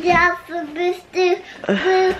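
A young boy singing a few short held notes of a tune, one note after another.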